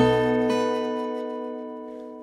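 Steel-string acoustic guitar in drop D tuning: a full six-note B chord (9th fret, fifth string skipped, 9th, 8th, 10th and 7th frets) sounded once and left to ring, fading slowly.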